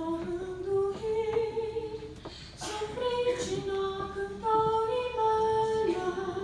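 A woman singing solo into a microphone, in slow, long-held notes that step and glide from pitch to pitch.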